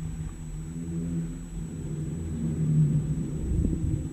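Low rumble of a running engine with a wavering hum, growing a little louder past the middle.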